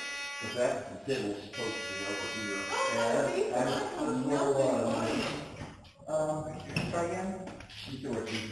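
Walk-through security metal detector sounding its buzzing alarm as a person passes through and sets it off. The buzz comes in stretches over the first few seconds and again about six seconds in, with voices underneath.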